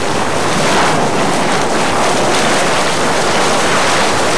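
Kilauea lava fountain erupting: a loud, steady rushing noise of gas and molten spatter jetting from the vent.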